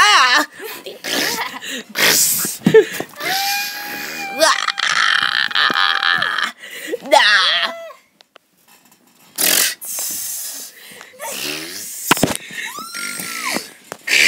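A child's voice making storm sound effects with the mouth: breathy whooshes and squealing, gliding cries, with a long held wailing tone in the middle and a brief near-silent gap about eight seconds in.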